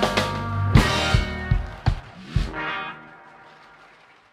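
Live blues-rock band with electric guitars and drum kit playing the ending of a song: five accented band hits with the drums, about 0.4 s apart, then the last chord rings and fades out.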